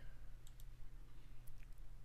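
A handful of faint computer mouse clicks over a low, steady electrical hum.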